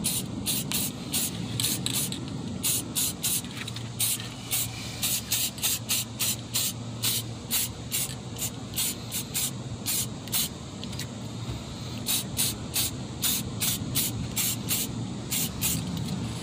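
Aerosol can of chrome spray paint misted onto a brake caliper in many short hissing bursts, about two or three a second, with a brief pause about eleven seconds in.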